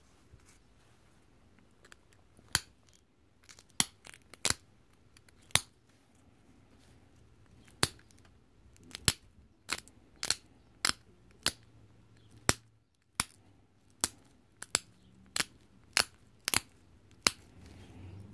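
Pressure flaking a stone drill bit: a pressure flaker's tip pressed against the stone's edge, each flake popping off with a sharp click. About twenty clicks, a few scattered ones at first, then a steady run of roughly one every half second to second through the second half.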